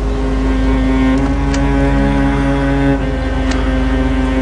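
Dramatic background score: sustained low chords over a deep drone, the chord shifting about a second in and again near three seconds.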